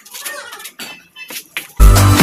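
Faint light clicks and knocks as a plastic LED light bar is handled on a tractor's bonnet, then loud electronic dance music with deep bass notes cuts in near the end.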